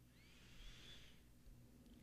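Near silence: room tone in a pause between sentences.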